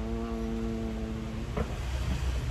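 A man's voice holding one long, level hesitation sound ('uhh') that stops about a second and a half in, over a low steady background rumble.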